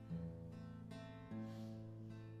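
Acoustic guitar strumming chords with no voice, a new chord struck just after the start and another about a second later.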